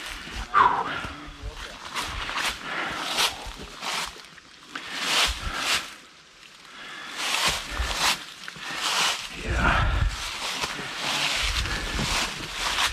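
Footsteps crunching through dry fallen leaves, with leafy brush rustling and scraping as it is pushed past, in irregular crackling steps that come slowly and unevenly.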